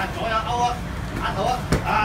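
Voices of people around the ring, with one sharp smack near the end: a boxing glove landing a punch.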